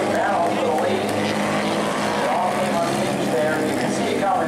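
Steady low engine hum of vehicles idling, with a distant, unintelligible voice over the track's public-address loudspeakers.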